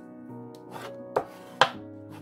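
Two short taps of paper card and hands on a wooden tabletop, a little past halfway, over soft background music.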